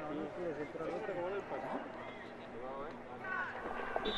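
Faint speech: a voice talking quietly over low background noise.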